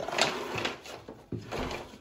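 A window being slid open: a scraping rattle in the first second, then softer knocks.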